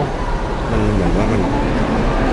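A voice speaking briefly about half a second in, over a steady low rumble of background noise.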